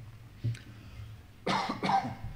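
A man coughing: a short cough about half a second in, then two louder coughs close together near the end.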